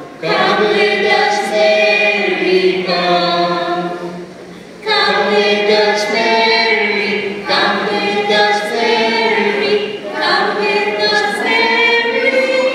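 A small group of adults and children singing a Marian hymn together without accompaniment, in long held phrases with a short break about four seconds in.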